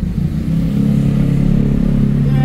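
Street traffic engines heard through an open car window, mostly motorcycles running close by. It is a loud, steady engine hum that grows stronger about half a second in.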